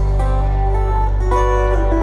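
Live country band through a PA playing the opening of a song: picked guitar notes over a held low bass note.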